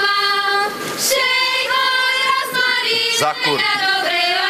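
Women's voices singing a Slovak folk song, high and unaccompanied, in long held notes.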